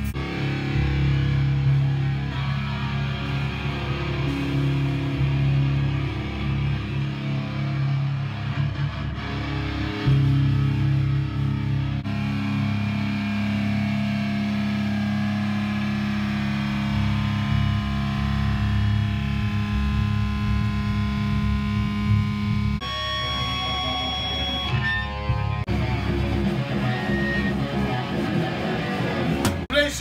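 Heavy metal music on distorted electric guitar, long held chords that change about twelve seconds in and again about twenty-three seconds in.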